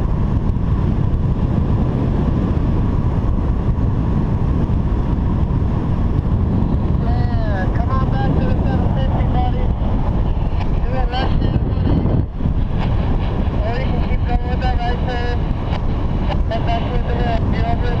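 Steady, loud wind noise buffeting the microphone of a camera flying under a paraglider.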